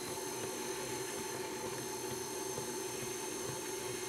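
Red KitchenAid tilt-head stand mixer running steadily at a lowered speed, its beater working flour into a thick chocolate cookie batter.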